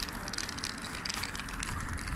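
Crackling, rustling noise over a low, steady street rumble, from a handheld microphone being carried while walking.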